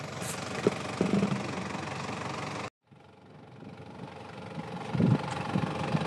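Toyota Land Cruiser Prado 4x4's engine running at low speed as the vehicle crawls over rocks. The sound breaks off about halfway through, then comes back and grows louder, with a few low knocks near the end.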